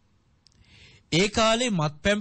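A man preaching in Sinhala pauses. A small mouth click and a faint hiss of breath come about half a second in, and he resumes speaking about a second in.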